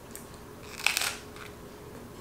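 Someone biting into a rolled pita sandwich with romaine lettuce: one short crunch about a second in.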